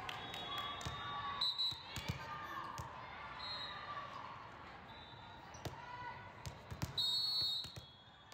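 The echoing din of a large hall full of volleyball courts: scattered thumps of volleyballs being hit and bouncing on the floor over a murmur of voices. Short high-pitched tones cut through, the loudest a brief one about seven seconds in.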